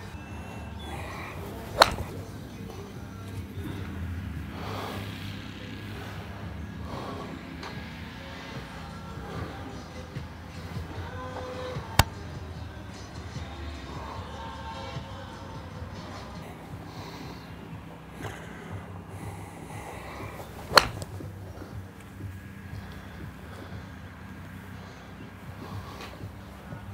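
Three sharp cracks of a golf club striking the ball, about ten and nine seconds apart, the last the loudest, over a steady bed of background music.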